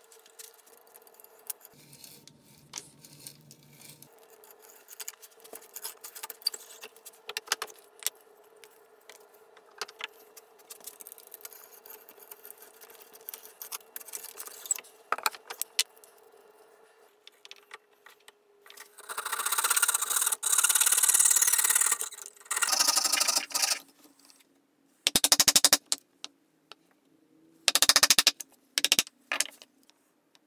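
Hand tools working plywood. First come quiet creaks and clicks of a brace and auger bit boring through the plywood. About two-thirds in, several loud rough strokes of a hand tool scraping through wood follow, then a few short bursts near the end.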